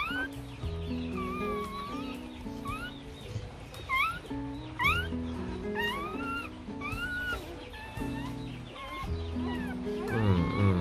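A newborn Rottweiler puppy crying in a string of short, high, rising squeals, more than one a second, over background music.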